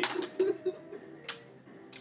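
Three short, sharp clicks, at the start, about half a second in and just past a second, with a few brief low tones after the first.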